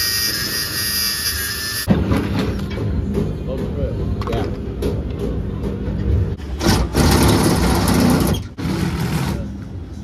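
An angle grinder on steel: a high steady whine for the first two seconds, then rough, uneven grinding with clicks, loudest from about six and a half to eight and a half seconds. A steady low machine hum runs underneath.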